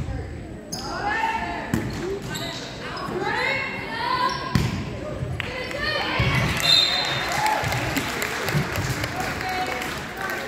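Volleyball rally in a gymnasium: a few sharp smacks of the ball being hit, among high-pitched shouts and calls from players and spectators. From about six seconds in, many voices cheer and shout together, echoing in the hall.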